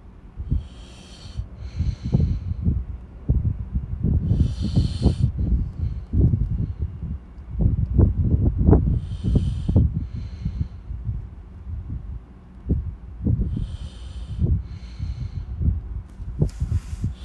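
Breaths close to a phone microphone, with short hissy bursts every few seconds over an irregular low rumble of handling or wind on the mic.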